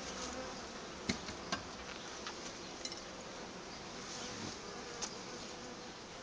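Honeybee colony buzzing steadily from an open hive, with a few light knocks about a second in, a second and a half in, and again near the end.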